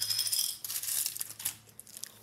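Small pin-back button (metal and plastic) rattling and wobbling to rest on a hardwood floor after being dropped: a fast run of light clicks that fades out by about a second and a half in.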